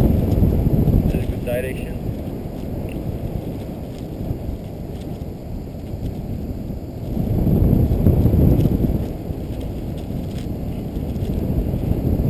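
Wind buffeting the camera microphone of a paraglider in flight: a low, rushing noise that swells louder for a couple of seconds about seven seconds in.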